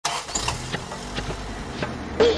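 Cartoon sound effect of a bus engine running as the bus drives in, with a few short clicks over it.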